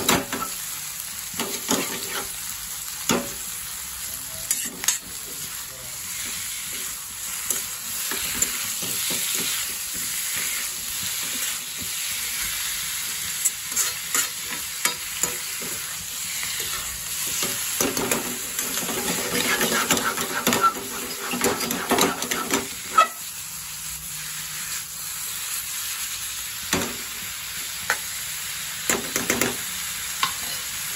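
Chicken pieces frying with onions and tomatoes in a metal kadai: a steady sizzle, with the spatula scraping and clicking against the pan as they are stirred.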